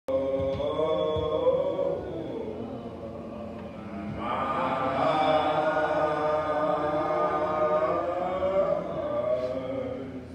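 Slow a cappella chanted singing in long, drawn-out held notes, growing louder and fuller from about four seconds in.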